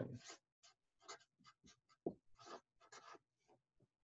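Felt-tip marker writing words on paper: a run of short, faint scratching strokes, one for each pen stroke of the letters.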